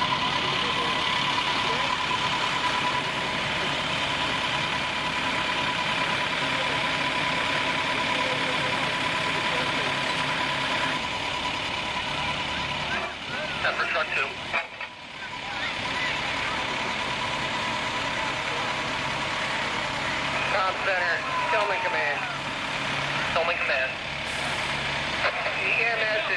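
Fire apparatus engines running steadily, a constant hum with a steady whine over it for the first ten seconds or so. The sound drops briefly about fifteen seconds in, then indistinct voices come through over the engine noise.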